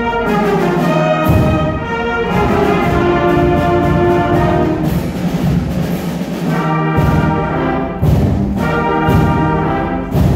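Middle school concert band playing live, brass carrying held chords. Strong low bass accents come about once a second in the last few seconds.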